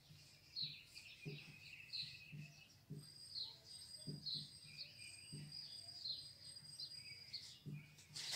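Faint bird chirping in the background: short, repeated falling chirps, with a thin steady high note held through the middle.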